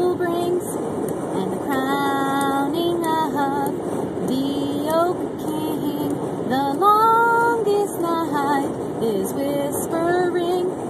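A woman singing solo and unaccompanied, a simple chant-like melody with long held notes, the loudest about seven seconds in, over the steady road noise inside a moving car.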